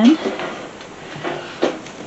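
Wicker baskets being picked up and handled: light rustling with a few short knocks, the sharpest about one and a half seconds in.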